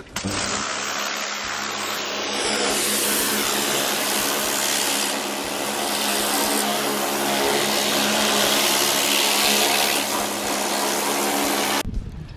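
Pressure washer running steadily, its motor humming under the hiss of the water jet blasting cobwebs off timber cladding. It cuts off suddenly near the end.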